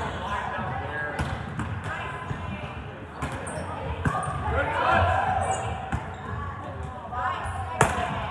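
Volleyballs being struck and bouncing on a hardwood gym floor: several sharp smacks, the loudest near the end, over the chatter and calls of players in a large gym.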